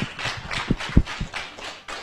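A run of irregular taps and knocks, with a couple of heavier thumps about a second in.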